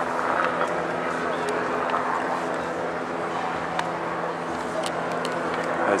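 A steady engine drone holding one constant pitch, over outdoor city ambience with faint distant voices.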